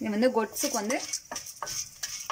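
Chana dal, urad dal and dry red chillies frying in a little oil in a steel pan, with scattered crackles and a faint sizzle as they are dropped in.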